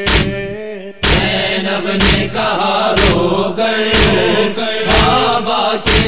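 A male voice chanting a noha, holding long, wavering melismatic notes over a steady low drone, with a heavy percussive beat about once a second in the style of matam (chest-beating) that keeps time in the lament. The voice drops out briefly about a second in, then resumes.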